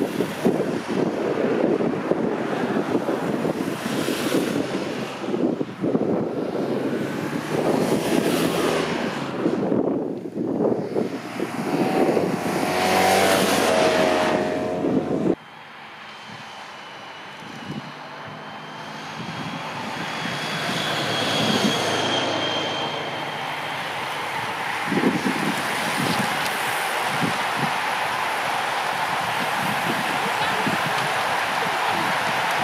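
Race escort vehicles, a police motorcycle and a car, passing along a country road, with wind buffeting the microphone. About halfway through the sound cuts off abruptly to a quieter, steady rush that slowly grows louder, with a thin high tone in it for a few seconds.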